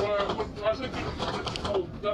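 Indistinct passenger conversation on a moving double-decker bus, over low engine and road rumble; the voices sound pitched down by the recording's deepening edit.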